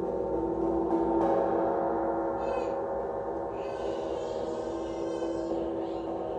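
Quartz crystal singing bowls ringing in a long, steady sustained tone. A fresh, brighter tone joins about a second in.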